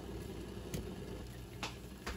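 Quiet kitchen background with two faint clicks about a second apart as the salt and pepper shakers are handled over a plate.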